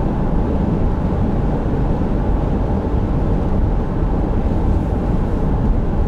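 Steady road noise inside a moving car's cabin: a low, even rumble of tyres and engine while driving along a highway.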